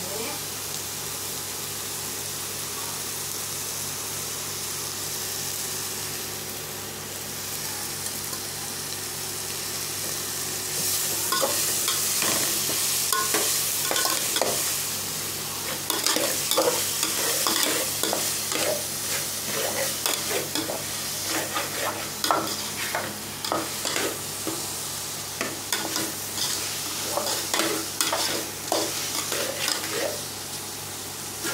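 Sliced onions, tomatoes and green chillies frying in oil in an aluminium pot: the onion-tomato masala base for chicken biryani. A steady sizzle runs throughout. From about ten seconds in, a metal slotted spoon stirs the mix, scraping and clinking against the pot in quick irregular strokes.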